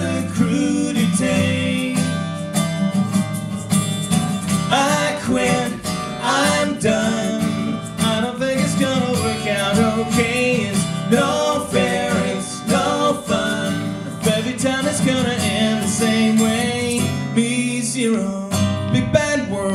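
Acoustic guitar playing an instrumental break in a live folk-pop song, with a wordless melody carried by voices at the microphones over it.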